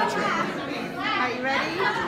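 Chatter of several people talking over one another in a hall, with a laugh near the start.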